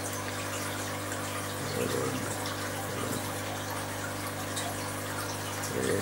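Steady rush of running water from aquarium filtration and aeration, with a low steady hum underneath.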